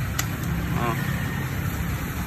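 A steady low engine rumble in the background, with one sharp click about a fifth of a second in as the plastic air-filter cover of a chainsaw is handled.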